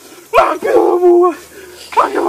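A man's loud shouted haka call: one forceful held cry starting sharply about half a second in and lasting about a second.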